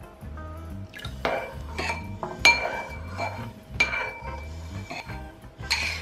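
A metal spoon clinking against a bowl, about five times, as it stirs tomato paste, oil and water into a sauce, with light background music.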